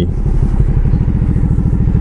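Motorcycle engine running steadily while riding, a dense low pulsing beat that holds even throughout.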